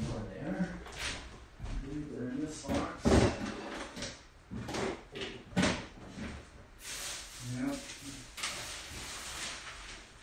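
Rummaging through storage: scattered knocks and clatters, the loudest about three seconds in, then a stretch of rustling near the middle, with a few brief low mutters.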